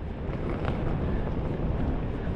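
Wind on the microphone: a steady rushing rumble, strongest in the low end, with no break.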